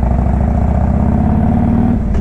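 Harley-Davidson Road King Classic's V-twin engine running steadily as the motorcycle cruises, heard loud at close range from a camera on the rider's chest.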